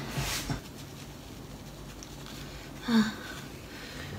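A woman sneezing: a short rising 'ah' runs into a sharp sneeze at the start, and a second short 'ah' with a smaller burst comes about three seconds in.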